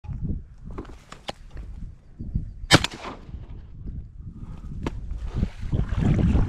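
A single shotgun shot about three seconds in, loud and sharp, with a short ringing tail after it.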